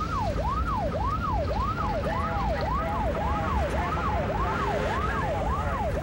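Police car siren in yelp mode, its pitch rising and falling about twice a second, heard from inside the pursuing patrol car over the engine and road rumble.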